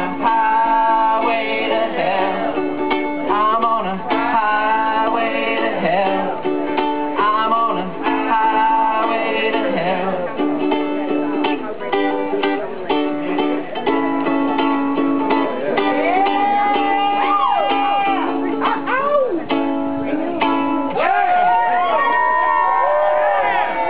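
Ukulele playing rock chords in a steady rhythm, with a voice singing over the strumming.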